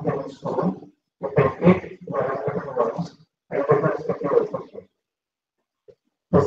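A person's voice in about four bursts of roughly a second each, separated by short gaps of silence, with no words that can be made out.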